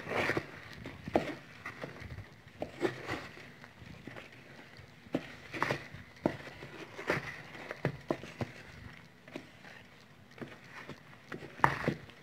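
Spatula folding flour into whipped egg batter for a genoise sponge: irregular soft scrapes and squelches against the dish, about one or two a second.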